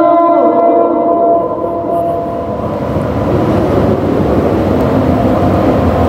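Held, organ-like musical tones fading out over the first second or so, giving way to a steady, loud rumbling noise.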